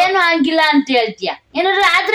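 A woman's high-pitched voice talking in a lively, sing-song way, with a brief pause near the end.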